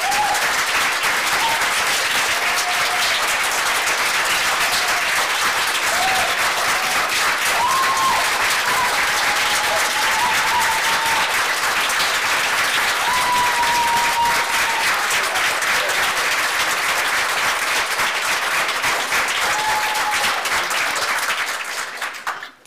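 Large audience applauding with dense, steady clapping, with a few drawn-out cheers over it; the applause dies away right at the end.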